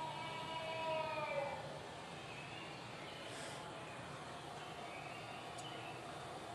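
A recorded long, high, held call played back over a lecture-hall sound system. It slides slightly downward and ends about a second and a half in, leaving faint hiss from the recording. The presenter attributes the call to a sasquatch and holds that it cannot be a human.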